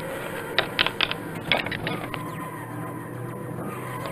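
Small plastic toy figure knocked and tapped against a wooden floor as it is handled: a quick run of sharp clicks in the first second and a half, then a steady low hum.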